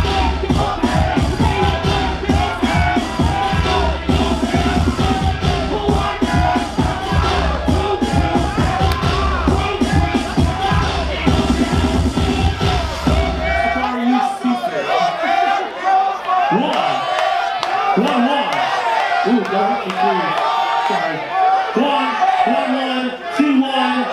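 DJ dance music with a heavy bass beat and a cheering crowd; about two-thirds of the way through the beat cuts out, leaving crowd shouting and a voice over a microphone.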